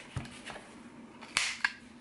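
A handheld corner-rounder punch snapping shut through the corner of a paper zine: one sharp snap about a second and a half in, then a smaller click a moment later.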